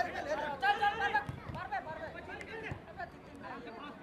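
Several people talking and calling out at once, overlapping chatter with no clear words, loudest in the first second and a half.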